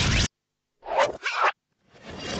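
Cartoon sound effects: a loud crackling electric-shock noise cuts off abruptly a quarter second in, then after a short silence comes a quick two-part swishing effect about a second in.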